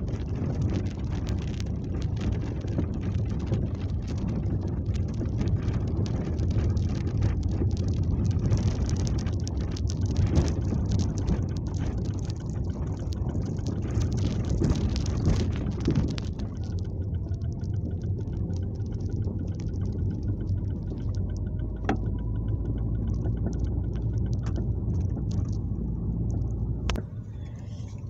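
Inside a moving car: steady low engine and road rumble with frequent rattles and knocks, which thin out after about sixteen seconds, followed by a couple of sharp clicks near the end.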